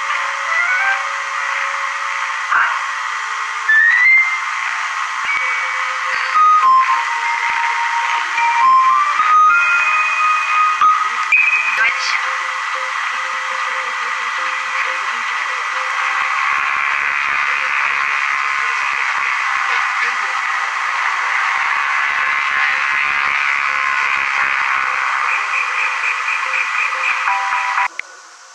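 Music from a worn VHS tape heard through a television's speaker. For the first half, a simple tune of single high notes, some sliding in pitch, plays over steady tape hiss. The second half is mostly dense hiss with faint music under it, and the sound cuts off suddenly at the end.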